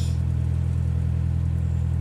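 Narrowboat engine running steadily while the boat cruises, a constant low hum.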